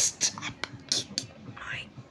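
A person whispering: a run of short, breathy hisses in the first second or so, then a softer breathy sound.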